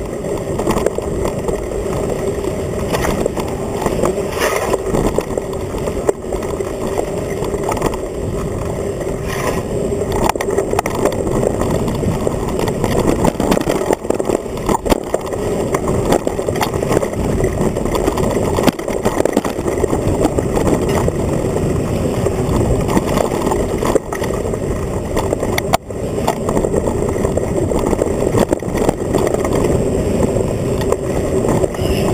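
Mountain bike rolling over a dirt trail, heard through a camera clamped to the handlebars: a steady, loud rumble of tyres and frame vibration with constant rattling clicks from the frame.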